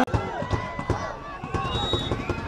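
Distant voices of players calling out across an outdoor football pitch, with scattered dull thumps. A brief high tone sounds near the end.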